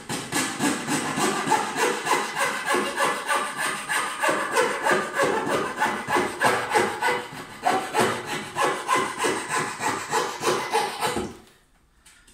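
Coping saw cutting through a wooden skirting board in quick short strokes, about three a second, stopping about a second before the end.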